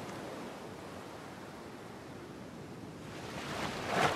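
Steady wash of ocean surf against lava rock, swelling sharply in the last second as a marine iguana drops into the water.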